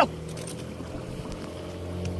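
Small boat's engine idling, a steady low hum.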